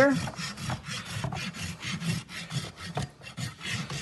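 Farrier's rasp filing the horse's hoof wall in short strokes in quick succession, taking back the part of the foot that sticks out past a freshly nailed-on urethane shoe.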